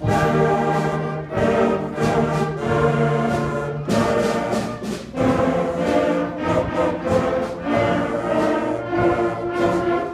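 Sixth-grade school concert band playing a march: flutes, French horns, bassoon, tubas and other brass and woodwinds together, with sustained low brass notes under the melody.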